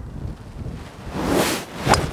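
Wind on the microphone, then near the end one sharp crack as a Callaway Big Bertha 3-wood strikes a golf ball off a tee.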